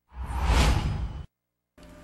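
A whoosh transition sound effect with a deep low rumble under it, lasting about a second and cutting off suddenly: the stinger that plays with the news programme's animated logo between stories.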